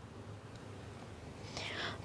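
Quiet pause: faint room hiss, with a soft breath growing near the end just before speech resumes.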